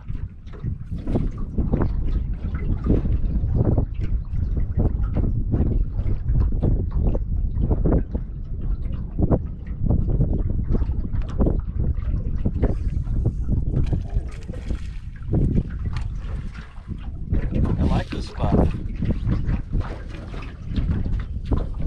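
Wind buffeting the microphone in a steady rumble, with small waves slapping and knocking against an aluminum boat hull.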